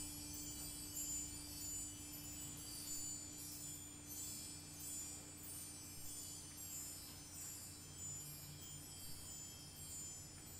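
Handbell choir playing softly: high bells shimmering with light, repeated strikes, over a lower bell's tone that slowly dies away.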